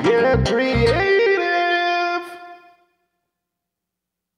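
Beat sequenced on a Korg Triton workstation playing, with bass and drum hits that stop about a second in. One held synth note then rings on and fades out before three seconds, ending the track.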